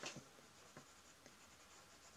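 Very quiet scratching of a coloured pencil on sketchbook paper, with a few light ticks near the start.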